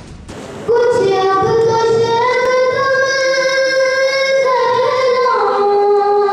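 A boy singing into a handheld microphone. His voice comes in about a second in on one long held note, then steps down to lower notes near the end.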